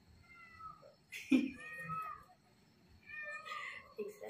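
A cat meowing, three short calls, with a brief knock about a second in.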